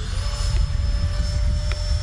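80 mm electric ducted fan of a Freewing JAS-39 Gripen RC jet flying overhead. It gives a steady whine that rises slightly in pitch just after the start as the fan speeds up. Gusty wind rumbles on the microphone underneath.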